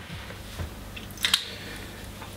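A few small sharp clicks over light handling noise, a pen being handled and its cap worked; the clearest pair of clicks comes a little over a second in.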